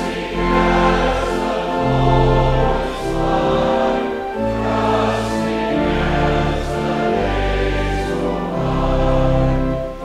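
Congregation singing a hymn together with instrumental accompaniment: held chords over a bass line that changes every second or two.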